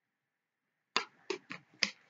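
Four quick, sharp plastic clicks from a doll's toy bottle and its cap being handled, starting about a second in.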